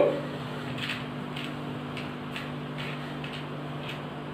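Faint, regular ticking about twice a second over a steady low hum.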